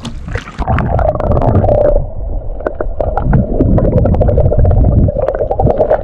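An action camera going into the sea: water splashing at the surface, then from about two seconds in the muffled low rumble and sloshing of water heard underwater, with a steady hum and many sharp clicks and crackles.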